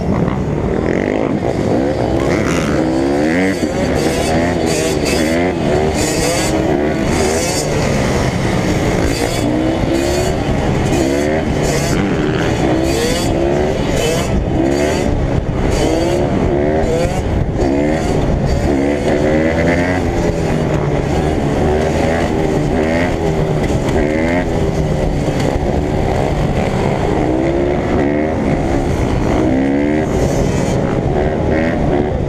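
Dirt bike engine close to the microphone, revving up and down again and again as it is ridden, with other dirt bikes and ATVs running nearby.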